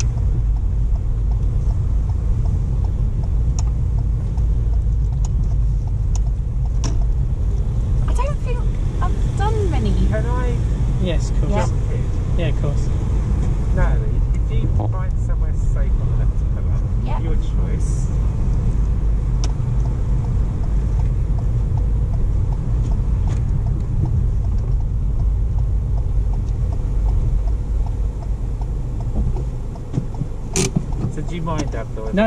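Steady low rumble of engine and road noise inside a moving car's cabin. Faint, unclear voices come in for a few seconds about a third of the way in.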